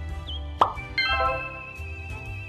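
Light background music with a short, upward-sweeping 'plop' sound effect a little over half a second in, followed by a held musical note.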